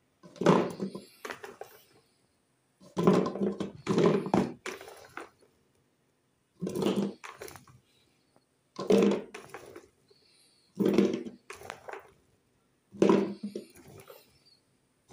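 Handfuls of raw green olives being scooped from a plastic basin and dropped into a glass jar: a burst of clattering and thudding about every two seconds, each lasting under a second.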